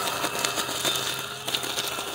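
Ambrogio L60 Elite S+ battery robot lawn mower running over dry leaves: a steady low motor hum with irregular crackling as its blade chops the leaves.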